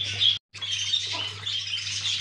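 Faint high chirping of small birds over a steady low hum, cutting out briefly about half a second in.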